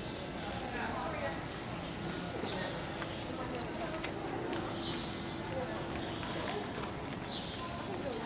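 Horses walking on soft arena footing, their hooves falling quietly, with people talking in the background.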